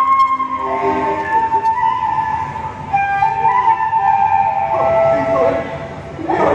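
A flute playing a slow melody of long held notes that step gradually downward.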